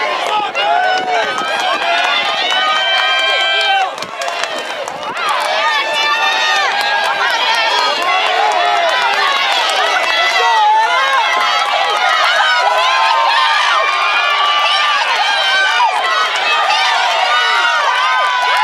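Many spectators shouting and cheering runners on, with loud voices overlapping and yelling over one another, and a short lull about four seconds in.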